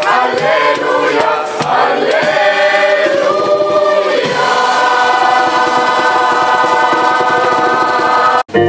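Mixed gospel choir of men's and women's voices singing, with shaker strokes in the first couple of seconds. From about halfway the choir holds one long sustained chord.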